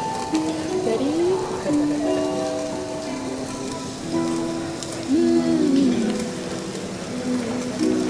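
Background music: a slow melody of held notes that steps between pitches, with a few sliding notes, over a faint steady hiss.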